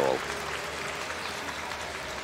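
An arena audience applauding steadily, an even patter of many hands. A man's voice ends right at the start.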